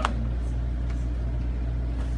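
Steady low hum of room background noise, with a single sharp click right at the start.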